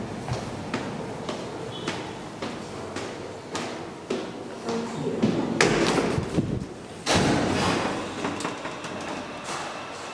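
Elevator doors being opened and closed at the landing: a run of clicks and clunks, with two louder thuds about five and a half and seven seconds in.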